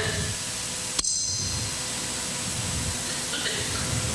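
A single sharp click about a second in, followed by a brief high-pitched ring, over steady room hiss.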